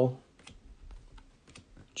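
Faint, scattered light clicks of trading cards being slid off the front of a stack held in the hand and tucked behind it.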